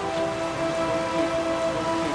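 A steady hiss like falling rain or spraying water, with sustained background music notes held underneath.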